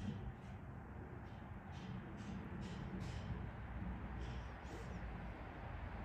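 Faint outdoor background noise: a low steady rumble with soft, irregular rustling sounds.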